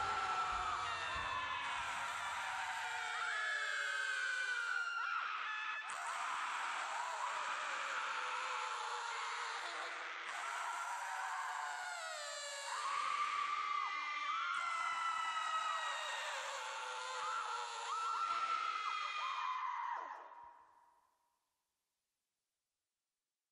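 Quiet closing section of a modern thrash metal track. The drums and bass stop about three seconds in, leaving high, wavering tones that slide up and down in pitch, and these fade out near the end.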